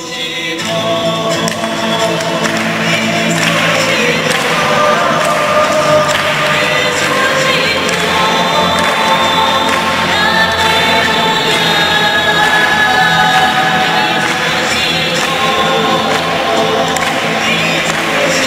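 A choir singing with music, swelling in loudness over the first couple of seconds and then holding steady.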